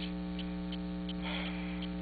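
Steady electrical mains hum, a low buzz made of several even tones, running on through a pause in the talk.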